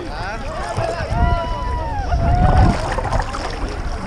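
Low rumbling and splashing of sea water and wind against a waterproof action camera held at the water's surface, heaviest a little past halfway. A person's long, drawn-out call sounds over it.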